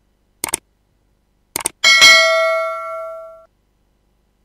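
Subscribe-button animation sound effect: two short mouse clicks, then a bright bell ding that rings out and fades over about a second and a half.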